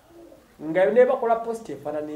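A man's voice: after about half a second of quiet, he starts a loud, drawn-out vocal passage with long held and gliding vowels.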